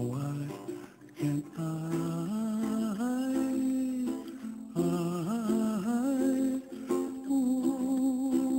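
Music: a voice humming a slow wordless melody in gliding phrases over a plucked-string accompaniment.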